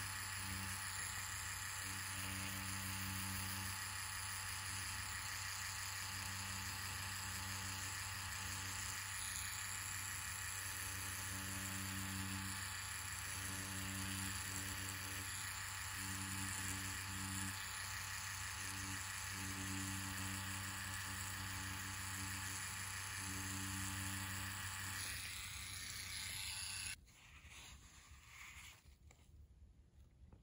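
Tattoo machine running steadily at about seven volts as the needle lines lettering into an orange's peel, a steady hum with a higher tone that comes and goes every second or two. It cuts off abruptly near the end.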